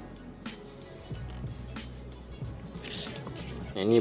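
Small metal parts of a gas stove's piezo igniter (spring, striker and housing pieces) being handled and set down, giving a few light clinks and clicks.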